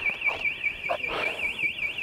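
Car alarm siren sounding continuously, a high electronic tone warbling rapidly up and down about six times a second.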